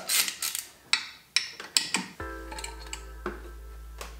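A few metal clicks and scrapes as an aluminium valve cover is worked loose and lifted off an LS V8's cylinder head. About halfway through, a steady held musical chord with a low hum beneath it comes in suddenly and carries on.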